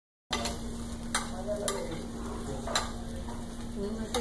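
Shrimp sizzling on a hot flambé platter while a utensil stirs them, with a few sharp clinks of metal against the pan.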